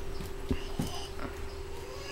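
A few soft knocks and taps as a baby's hands grab at and handle a wicker basket, over a steady hum.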